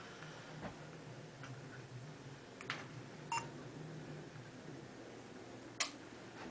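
Handheld digital camera being operated in a quiet room: a few faint button clicks, a short electronic beep about halfway, and a sharper click near the end, over a low steady hum.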